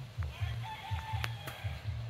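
A rooster crowing once, a call of about a second and a half, over background music with a low, pulsing beat.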